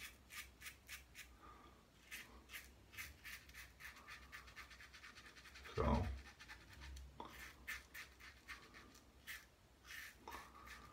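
Schick Type M injector safety razor scraping through lathered stubble in quick, short strokes, several a second, as the upper lip and cheek are shaved. A brief, louder low sound comes about six seconds in.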